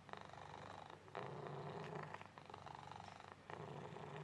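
Black Persian cat purring, faint and steady. The purr grows louder and softer in turn about every second as the cat breathes in and out.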